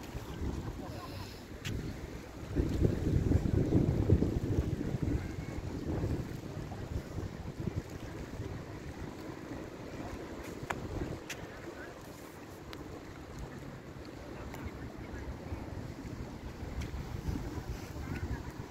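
Wind buffeting the phone's microphone: a gusty low rumble, loudest in a gust from about three to six seconds in, then easing.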